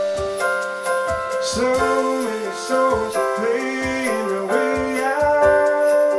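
Nord stage keyboard played live in a piano-like sound: sustained chords with a new low note struck about once a second. A male voice sings a couple of held, gliding notes in the middle.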